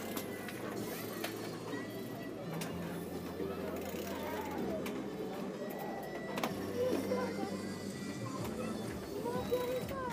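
Background music at a low level, with indistinct murmur of people talking and a few faint clicks.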